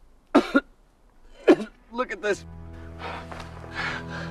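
A person's short, sharp vocal outbursts, coughs or gasps without words: two loud ones in the first half and a quick cluster near the middle. About two and a half seconds in, a film score enters with a low sustained chord, and breathy vocal sounds continue over it.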